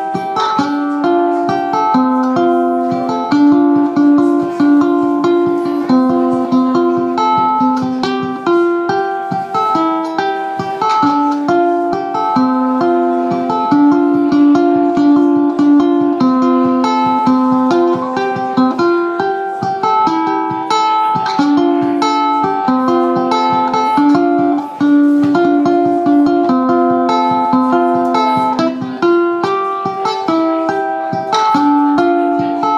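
Solo ukulele playing a waltz, a plucked melody line over chords, without singing.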